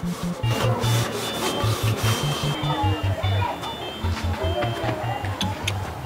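Quick rough scrubbing strokes against a metal bowl, dense through the first couple of seconds, over background music with a steady bass beat.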